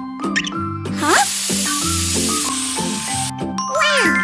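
A spray-bottle hiss sound effect lasting about a second and a half, starting about a second in, over light background music, with sliding cartoon tones and chimes around it.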